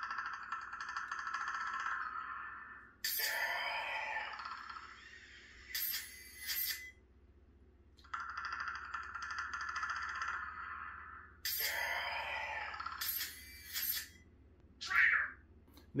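Lightsaber soundboard playing the Predator sound font, twice in a row: a steady, pitched preon sound of about three seconds while the broken preon effect flickers, then the ignition sound sweeping upward, followed by two sharp strikes.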